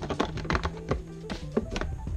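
Hard plastic clicks and taps, several in quick succession, as a plastic tray is pressed and settled into a clear plastic storage box, over background music with steady held notes.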